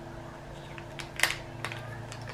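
A small clear plastic jewelry packet crinkling a few times in the fingers as a ring is handled inside it, the sharpest crinkle about a second in, over a steady low hum.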